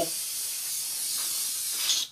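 A sprayer hissing steadily as it sprays liquid weathering wash over a model aircraft, then cutting off suddenly at the end.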